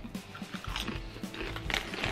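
Mouth crunching and chewing a Lay's ketchup potato chip: a run of small, crisp crunches, faint under soft background music.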